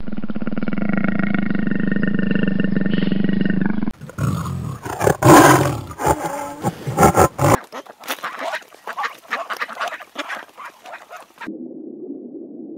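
Big cats in a run of edited clips: a steady purring rumble for about four seconds, then loud growls and snarls in irregular bursts, then softer crackling clicks near the end.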